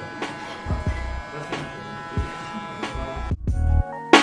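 Electric hair clipper buzzing steadily over background music with a regular beat; the buzz cuts off abruptly a little over three seconds in, leaving only the music.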